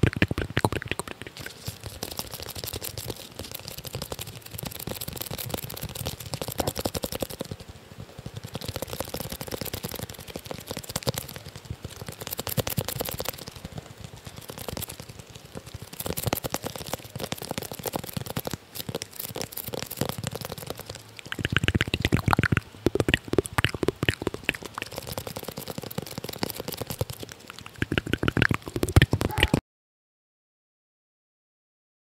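Close-miked ASMR hand sounds: fingers scratching, rubbing and tapping on and around a microphone and on a small wooden object, a dense crackle of quick small clicks. It grows louder about two-thirds of the way through and cuts off suddenly just before the end.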